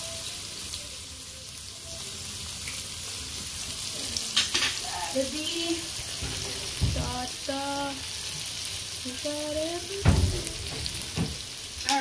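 Sliced onions, bell peppers and carrot strips sizzling in hot oil in a pan, a steady hiss, with two dull knocks partway through.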